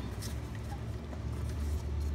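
Steady low background hum with a few faint light clicks as the timing chain linking the intake and exhaust camshafts of a VW 2.8 V6 head is worked by hand to make it jump a tooth.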